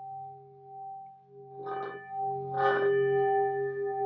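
Large metal singing bowl ringing with a steady low tone and a higher overtone, wavering as it fades, then struck twice with a wooden mallet about a second apart, each strike bringing the ring back louder with bright upper overtones.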